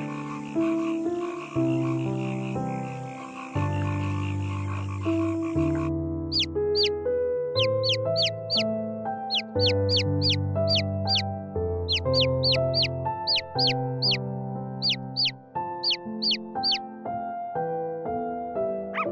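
Calm instrumental background music, a slow melody over held bass notes. From about six seconds in, short high chirps repeat a few times a second over it.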